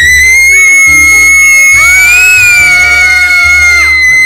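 Several girls screaming together in one long, loud, high-pitched held scream, with lower voices rising and falling beneath it, over background music.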